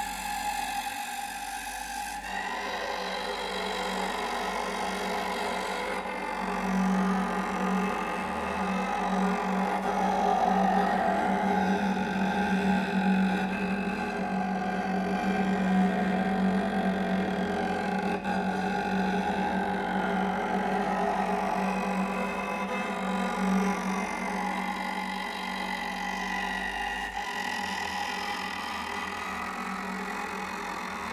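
Solo cello played with extended, noise-based techniques: a sustained, grainy bowed scraping. About six seconds in, a steady low pitched tone comes in under it and the sound grows louder.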